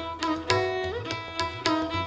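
Violin playing Hindustani Raag Madhuvanti in Teentaal, with tabla accompaniment. The bowed melody holds notes and slides up between pitches about halfway through and again near the end. Crisp tabla strokes come several times a second over a deep, ringing bass drum tone.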